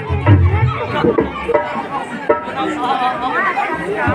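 Several voices talking over one another, a jumble of chatter with no single clear speaker.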